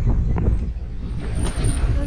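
Engine of a safari vehicle running, a steady low rumble.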